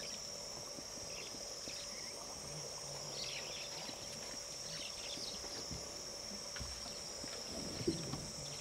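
Steady high-pitched insect drone, like crickets or cicadas, with a few faint short chirps scattered through it and a couple of soft low thumps late on.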